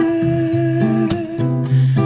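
Two acoustic guitars being played, with a man's voice holding one long note over them between sung lines.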